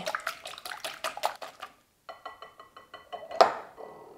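Wire whisk beating egg whites in a glass bowl: rapid clicking of the tines against the glass with light sloshing. After a short pause, more strokes set the bowl ringing, and one louder knock comes about three and a half seconds in.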